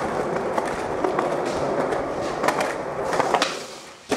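Skateboard wheels rolling on smooth concrete, a steady rumble with a few sharp clicks, fading near the end as the board rolls away.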